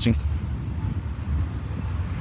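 City street traffic: a steady low rumble of cars.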